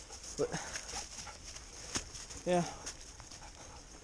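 Faint sounds of a dog close by, over a steady high hiss, with one sharp click about two seconds in.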